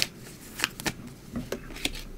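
Tarot cards being handled as one is drawn from the deck and turned over: a few short, light clicks and snaps of card stock.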